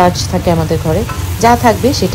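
Battered fish and vegetables sizzling in a hot wok as a wooden spatula stirs them. A wavering pitched sound rides over the frying.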